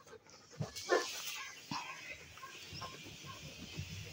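Raccoons foraging on dirt ground, with a short animal call about a second in, then faint soft chirps and scuffling.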